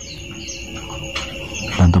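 Crickets trilling steadily at a high pitch, with a faint low drone underneath; a man's voice starts right at the end.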